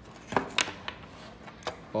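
A few sharp clicks and taps of a small plastic model axle housing being handled and pulled open, one about half a second in and another near the end.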